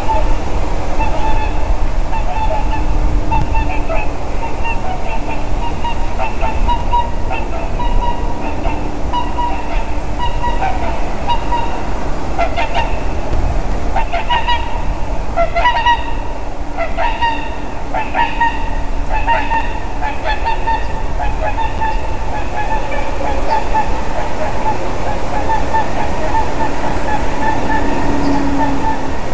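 Swans honking in flight as they pass, a series of short repeated calls that comes thickest midway, over a steady low rumble of wind on the microphone.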